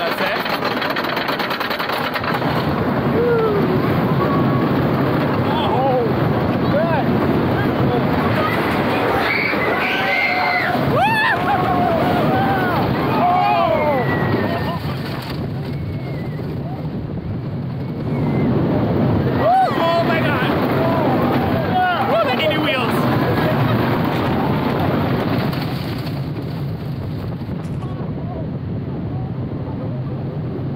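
GCI wooden roller coaster ride heard from a rider's camera on the train: a steady rush of wind and train noise, with riders laughing, whooping and screaming over it. The noise eases briefly about halfway through and again near the end.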